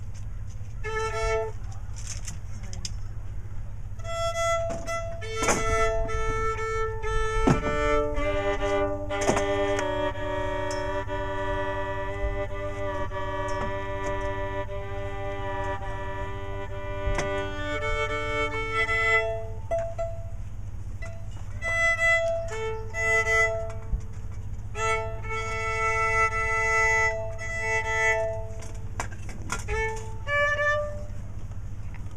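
Fiddle being tuned: open strings bowed two at a time in long, steady double stops, with a few short single notes about a second in and pauses between the held pairs. A steady low hum runs underneath.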